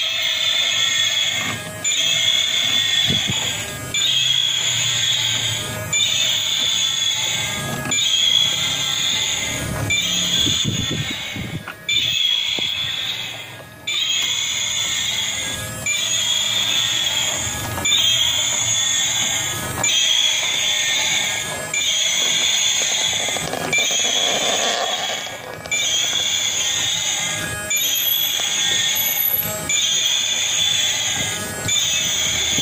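Battery-powered walking robot stegosaurus toy playing a short electronic sound loop through its small speaker, restarting about every two seconds, with the whir and clatter of its walking gear motor underneath.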